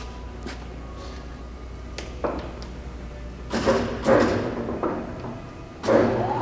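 Ganesh GT-3480 engine lathe's drive humming low and dying away about five seconds in, as the spindle is braked. Clicks and clunks of headstock levers being shifted come through it, with a louder stretch of whirring gear noise a little past halfway.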